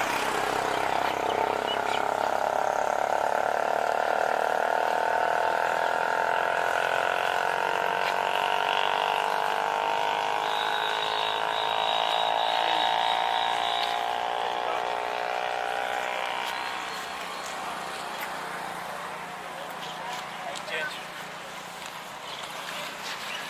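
Many voices together hold one long drawn-out note in unison, sliding slowly down in pitch. It fades out after about seventeen seconds.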